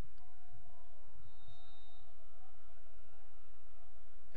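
Steady low rumble of open-air stadium background, with a faint thin high tone for under a second near the middle.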